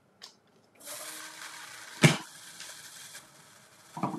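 Motorized window blind running on its electric motor with a steady hum for about two and a half seconds after a click, with one sharp knock about two seconds in.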